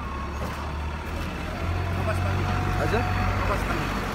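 A road vehicle's engine running with a low, steady rumble that grows louder a little under halfway in.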